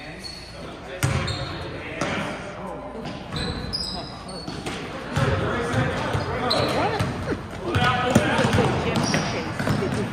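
A basketball bouncing on a hardwood gym floor, echoing in a large high-ceilinged hall, with short high squeaks of sneakers and spectators' voices growing busier about halfway through.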